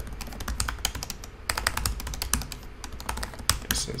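Typing on a computer keyboard: quick runs of key clicks with brief pauses between them.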